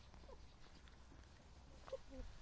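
Two soft, brief clucks from Marans hens, one just after the start and one near the end, over a faint low rumble and a few faint ticks.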